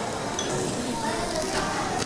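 Restaurant ambience: faint, indistinct voices over a steady hiss.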